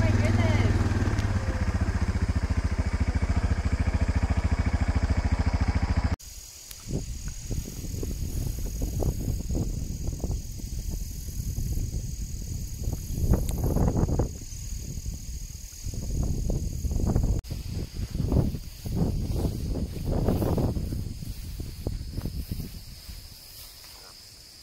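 A loud steady low hum cuts off abruptly about six seconds in. After it comes an outdoor field soundscape: uneven low rumbling surges over steady high-pitched insect trilling, typical of crickets in grass.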